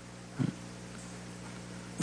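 A pause in speech, filled with a steady low electrical hum and room tone, with one short burst of sound about half a second in.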